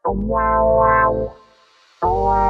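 Wordless layered vocal chord of a voice-only a cappella arrangement, sounding like a synth or electric piano. One held chord of about a second and a half starts sharply, swells twice and dies away, then a short pause, as part of a phrase repeating every two seconds.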